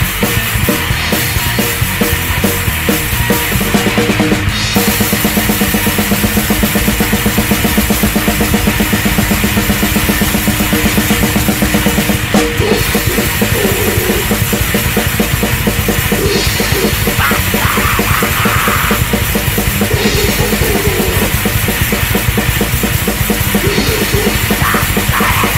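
Hardcore punk band playing: distorted electric guitar and bass over fast drum-kit beats.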